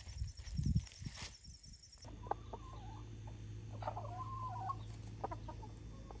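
Hens clucking, a run of short calls starting about two seconds in over a steady low hum. Before that there are a few soft thumps and clicks.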